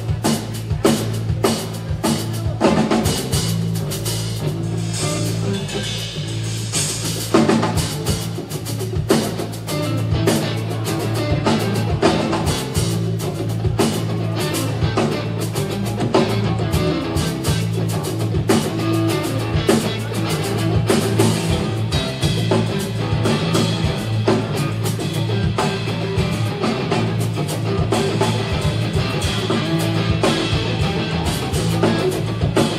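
Live rock band playing the opening instrumental section of a song: electric guitars over a drum kit, with steady drum hits throughout and a swell of cymbals about five to seven seconds in. No singing yet.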